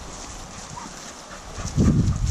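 Rustling and dull, irregular thumps close to the microphone, growing louder near the end, like a handheld camera being moved and brushed through leaves.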